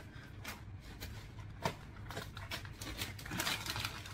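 Plastic grocery packaging and bags rustling as they are gathered up by hand, with a few light knocks, the sharpest about a second and a half in.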